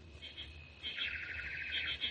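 Birdsong sound effect: a few short high chirps, then a rapid warbling trill from about a second in.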